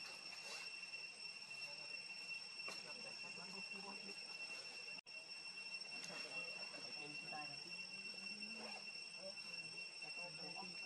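Faint, steady high-pitched insect drone of crickets or cicadas, with a brief dropout about halfway through.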